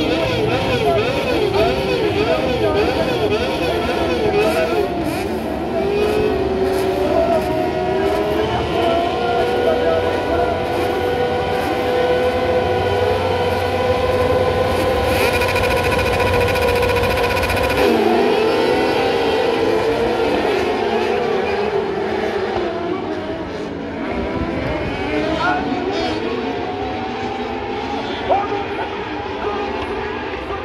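A grid of kart cross buggies revving their motorcycle engines on the start line, pitches wobbling as the throttles are blipped, then held steady at high revs. About eighteen seconds in the held notes break off as the field launches, and the engines grow quieter as the pack pulls away.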